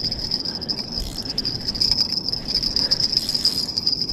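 Crickets chirping in a steady, high-pitched chorus at night.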